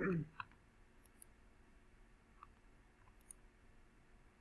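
A brief, falling vocal sound, a short murmur, right at the start, then a few faint, scattered clicks at the computer.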